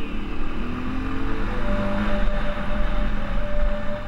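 Off-road dirt bike engine running under way, its pitch climbing over the first couple of seconds, with a heavy rush of wind and road noise on the bike-mounted microphone.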